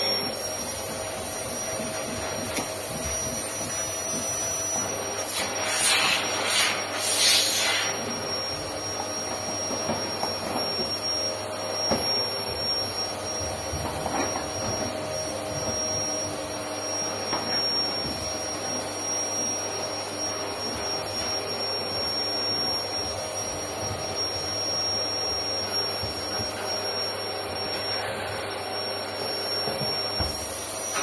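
A steady mechanical drone with a thin high whine runs throughout. About six to seven and a half seconds in come a few short rasping bursts, fitting worn seat upholstery and foam being pulled apart by hand.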